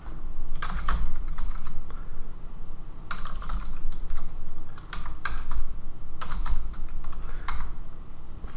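Typing on a computer keyboard in about five short bursts of keystrokes, each burst with a low thud underneath.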